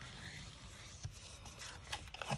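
Bone folder rubbing along the score line of a sheet of cardstock to burnish the crease: a faint scrape, with a couple of light taps as the paper is handled.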